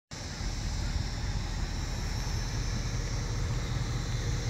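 Ford Mustang GT's 5.0-litre V8 idling with a steady low rumble.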